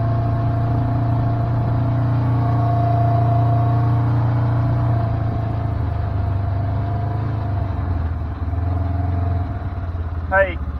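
Engine of a small open side-by-side utility vehicle running steadily as it drives along, its pitch easing lower in the second half as it slows.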